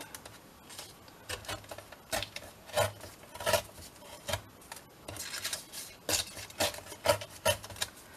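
Folded paper pages torn against the edge of a steel ruler in a series of short rips, leaving a rough, jagged torn edge.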